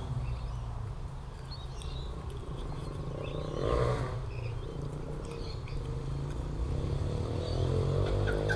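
Outdoor background of a steady low rumble with scattered faint bird chirps, and a brief louder sound about three and a half seconds in.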